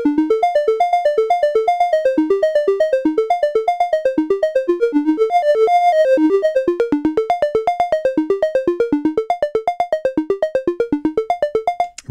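ST Modular Honey Eater analog oscillator (CEM3340 chip) playing a bell-like triangle wave in a fast random sequence of short notes, about eight a second, hopping up and down in pitch. Near the end the notes grow shorter and more separated.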